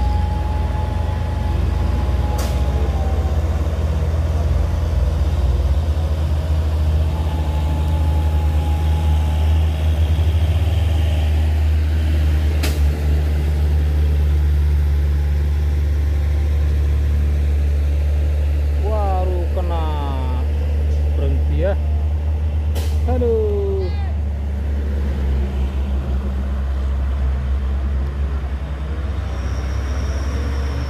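Heavy diesel engine of a Mitsubishi Fuso tanker truck running with a steady low drone while the truck, unable to make the steep climb, is held on the grade. Three sharp clicks sound through it, and voices call out briefly past the middle.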